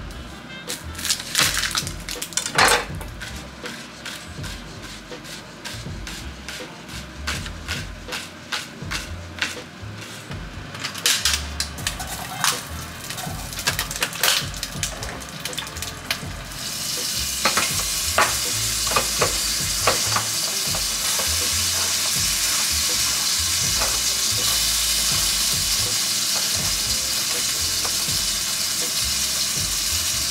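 A chef's knife chopping a shallot on a cutting board, a run of separate taps. About halfway through, a steady sizzle starts as cherry tomatoes fry in hot oil in a pan.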